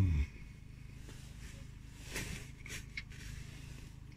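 Steady low rumble of road traffic heard from inside a parked car, with a few soft rustles and small clicks about two seconds in as a man chews and handles a bread breakfast bun.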